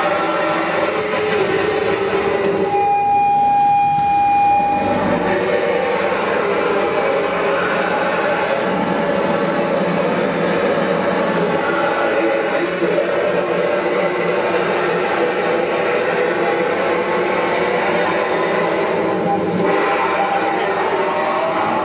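Harsh noise music played live: a loud, unbroken wall of distorted electronic noise, with a single held high tone sounding for about two seconds near the start.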